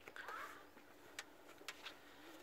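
Near silence outdoors, broken by a faint, curving sound in the first half second and three faint ticks in the second half.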